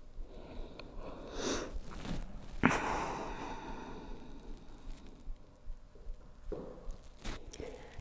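A person breathing audibly: two long, soft exhales about one and a half and three seconds in, with a few faint sniffs and small ticks between them.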